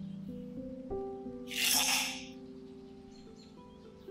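Ice cubes tipped from a plastic scoop into a glass, one brief clatter about a second and a half in, over soft background music.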